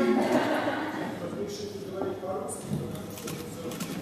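Faint, distant voices of audience members calling out across a large hall, away from the microphone, with a few light clicks in the second half.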